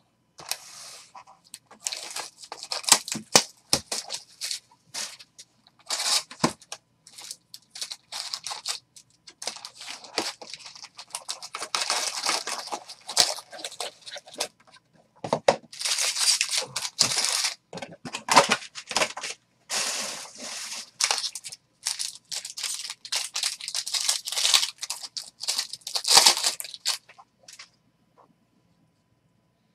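Topps jumbo foil card packs being torn open and their wrappers crinkled: a long run of irregular ripping and rustling with many short loud rips.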